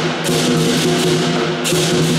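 Southern lion dance percussion playing: a large Chinese drum beating with clashing cymbals and a ringing gong. A cymbal crash comes near the end.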